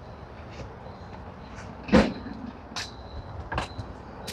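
Outdoor background with a low steady rumble, a single sharp knock about halfway through, and a few lighter clicks after it.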